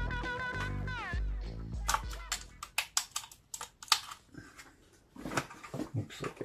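Background music plays for the first two seconds, its tones sliding down in pitch about a second in before it stops. After that come a series of light clicks and taps as a small part is fitted into a 3D-printed plastic spotlight housing.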